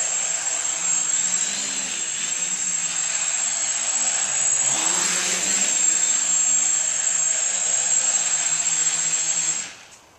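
Home-built quadcopter's four KDA 20-22L brushless motors and 10x6 propellers buzzing in flight, with a steady high whine over a low hum, louder briefly about halfway. The sound cuts off suddenly near the end as the motors stop after it sets down.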